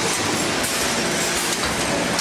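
ALM-2062 mobile-jaw horizontal packaging machine running: a steady mechanical noise with a faint low hum under it.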